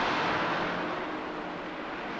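Shipyard work noise: a steady rushing hiss that slowly fades.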